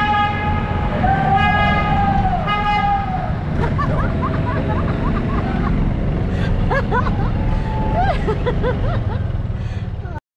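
Golf cart horn honking in a tunnel: one honk ends just after the start, and a second is held for nearly two seconds, over the steady low rumble of the moving cart. After that, many short rising-and-falling whoops from riders' voices follow one after another.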